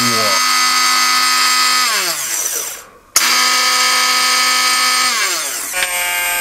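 Krups Perfect Mix Pro 9000 hand blender running empty on turbo with a steady whine. It winds down about two seconds in and stops briefly. It then starts again abruptly, winding down near the end to a lower, slower whine.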